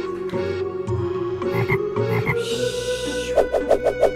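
Frog croaking for an animated clay frog: a fast, even run of croak pulses, about eight a second, starting near the end, after a held low tone that slowly rises in pitch.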